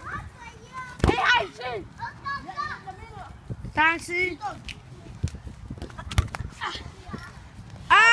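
Children's voices shouting and calling out to each other during a soccer game, in short bursts throughout. Two sharp thumps, about a second in and about six seconds in, and a loud shout at the very end.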